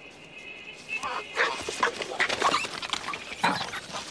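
Langur monkeys calling: a fast run of short, loud calls and screeches that starts about a second in, after a faint steady high tone.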